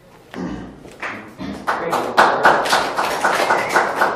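Audience applauding at the end of a talk, starting with a few separate claps and building to dense, steady clapping about one and a half seconds in.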